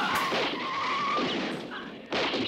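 Car tyres squealing as cars skid to a halt, a long wavering screech that fades out, with a gunshot at the very start.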